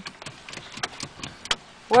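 Quick, irregular light clicks and knocks, about four or five a second, from a toddler working a van's steering wheel and dashboard controls.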